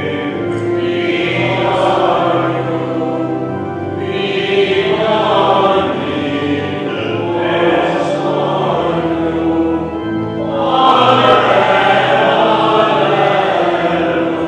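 Church hymn sung by many voices: the opening hymn of a Catholic Mass, in long held notes, with brief breaks between phrases about four and ten seconds in.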